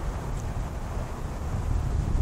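Chevrolet 5.7 L 350 V8 idling steadily, heard low and even from behind the car at the exhaust, with some wind on the microphone.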